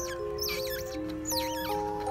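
Baby otter pups squeaking: about three short, high, wavering squeals, over background music of held notes.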